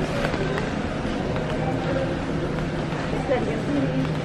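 Shopping cart rolling and rattling over a store floor, under indistinct voices and a steady low hum.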